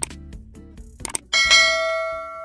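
Subscribe-button animation sound effect: a couple of clicks, then about a second and a half in a bright bell-like notification ding that rings on steadily.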